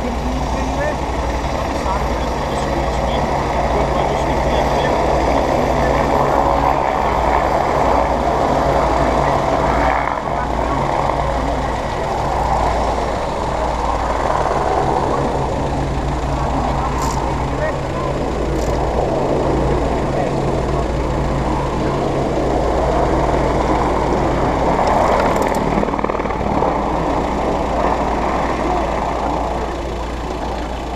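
Ambulance engine idling with a steady low hum that stops about five seconds before the end, under indistinct voices of people talking nearby.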